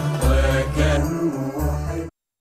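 Chanted Christian hymn in Arabic, a singing voice over music with deep, repeated bass notes.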